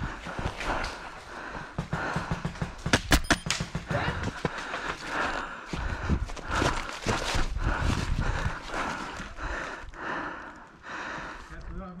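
A player's running footsteps on grass and his heavy breathing, close to a head-mounted camera microphone. A quick string of sharp airsoft rifle shots comes about three seconds in.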